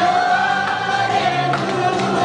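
A woman singing a Korean trot song into a microphone over a disco backing track, holding one long note.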